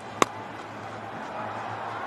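Cricket bat striking the ball: one sharp crack about a quarter of a second in as the batter drives the delivery.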